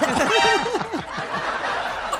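A person laughing into a microphone: a quick run of about five short bursts in the first second, then trailing off quieter.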